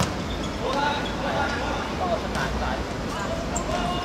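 A football kicked once, sharply, right at the start, followed by players shouting and calling to each other on the court.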